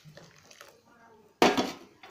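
A metal spoon strikes the metal kadai once, about one and a half seconds in, and the pan rings briefly as the sound fades.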